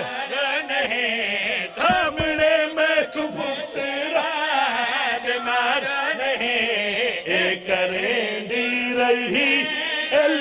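A zakir's loud male voice chanting elegiac verse in a wavering, melodic style, with long held notes and a short break for breath about two seconds in.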